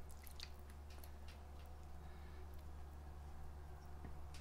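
Faint scattered drips and soft wet ticks of water trickling from a plastic measuring cup onto peat seed-starting pellets soaking in a tray, over a steady low hum.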